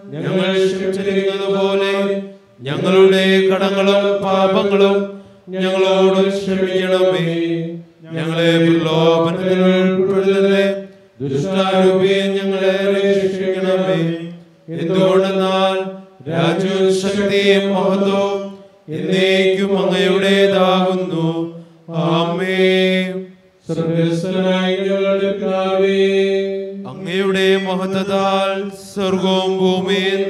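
A man chanting liturgical prayers on a reciting tone. He sings about eleven phrases of two to three seconds each, mostly on one or two held notes, with short breaths between them.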